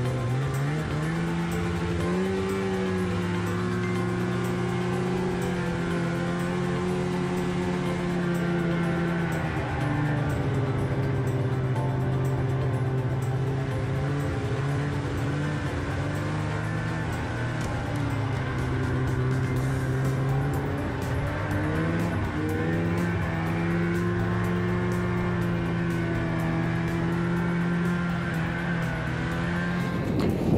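Snowmobile engine running at a steady pitch under throttle, dropping about ten seconds in and rising again a little past twenty seconds as the rider eases off and gets back on the throttle.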